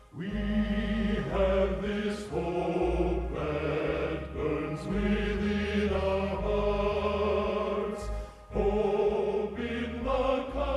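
A men's choir singing a hymn in close harmony, holding long chords over a low bass part, with a short break for breath about eight and a half seconds in.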